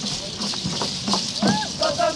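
Voices singing a repeated call-and-chant, with a rising whoop about a second and a half in, over a steady rattle of shakers.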